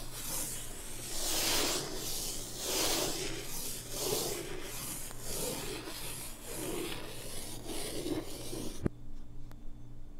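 Chalk rubbing on a blackboard in long looping strokes, played in reverse, so each stroke swells up and cuts off; about one stroke a second. The strokes stop with a sharp click near the end.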